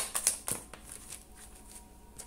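Tarot cards being handled and one laid down on the table: a quick run of crisp card clicks and taps in the first second, then softer rustling.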